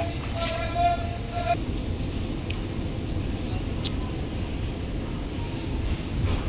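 A short, high-pitched laugh in the first second and a half, over a steady low rumble.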